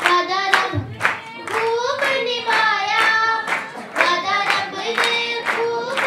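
Group of children singing a Punjabi Christmas song in unison, with hand clapping on the beat, about two claps a second.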